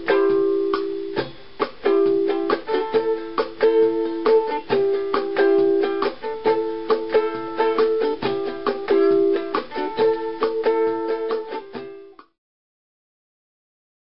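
Ukulele playing the closing instrumental bars of a song, the chords getting gradually quieter and stopping about twelve seconds in.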